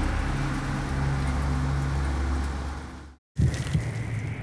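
Car cabin noise: a steady low engine and road drone heard from inside the vehicle, fading out about three seconds in. After a moment of silence comes a sudden loud hit.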